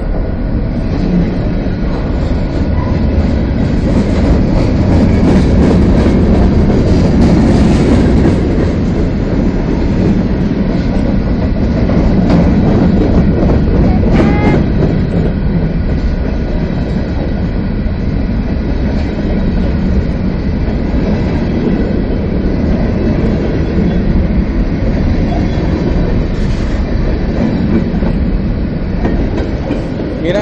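Freight train cars, container flatcars and covered hoppers, rolling past close by: a steady loud rumble of steel wheels on the rails, with a brief wheel squeal about halfway through.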